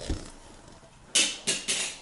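A metal spoon scraping dough off the sides of an enamel bowl: a soft knock at the start, then three short, loud scrapes in the second half.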